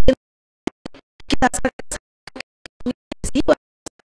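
A woman's amplified speech broken up by repeated audio dropouts, so it comes through as short stuttering fragments with sudden gaps of silence between them.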